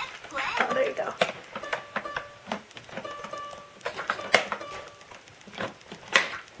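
Short electronic tones and bits of tune from a plastic baby activity table as its buttons and keys are pressed, mixed with sharp taps and clicks on the plastic and a child's voice in the first second.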